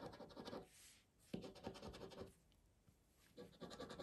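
Round scratcher disc scraping the coating off a Scrabble Cashword scratch card in faint bursts of quick strokes. There are two bursts about a second each, then a pause of about a second before the scratching starts again near the end.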